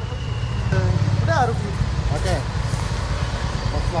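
A vehicle engine running with a steady low rumble, with people talking in the background.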